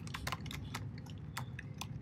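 Computer keyboard typing: a handful of light, uneven keystrokes as a short word is typed.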